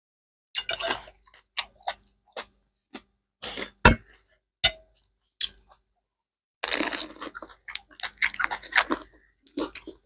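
Crispy fried Hmong egg rolls being bitten and chewed, crunching in irregular bursts, with one sharp crunch just before four seconds in and a longer run of crunching from about seven to nine seconds.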